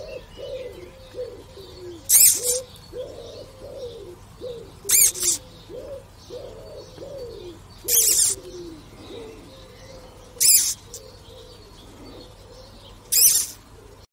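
A silk moth caterpillar squealing each time it is squeezed: five short, loud, high squeaks about every two and a half to three seconds, its defence call. A low warbling coo runs on between the squeaks.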